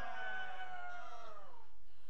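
A person's long, drawn-out wailing cry, sliding down in pitch and dying away about one and a half seconds in.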